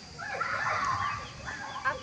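Indistinct background voices of several people, with overlapping calls and chatter that nobody near the microphone is speaking.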